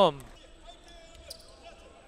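The last word of commentary, then faint basketball court sounds in a gym: a few soft knocks over a low background.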